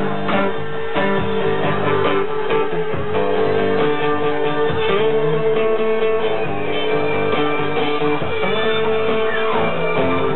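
Live acoustic guitar playing an instrumental passage, strummed and picked in a steady rhythm, with a long held tone sounding underneath.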